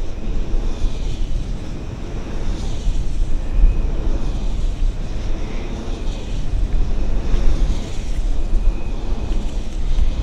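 Wind buffeting the microphone: a loud, low rumble that swells and drops with the gusts.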